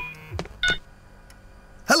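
The electronic ringtone of a mobile phone dies away, then a single short beep sounds about two-thirds of a second in as the call is answered.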